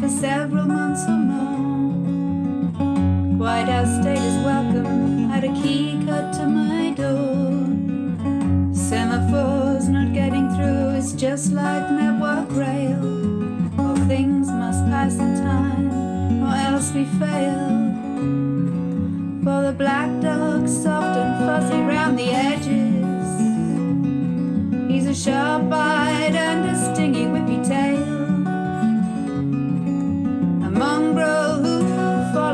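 Acoustic guitar strummed in steady chords, with a woman singing over it in wavering, sustained lines.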